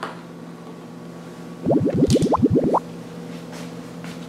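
Cartoon-style scene-transition sound effect: a quick run of about ten rising 'bloop' glides lasting just over a second, starting about one and a half seconds in.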